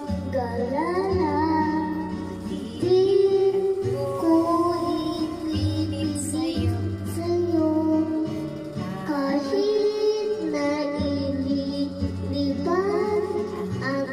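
A young boy singing a melody into a microphone, his voice amplified over a backing music track with steady low notes.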